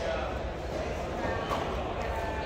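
Indistinct background chatter of people talking, with one brief click about one and a half seconds in.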